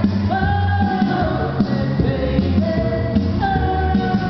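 A woman singing karaoke into a microphone over a backing track, holding long notes.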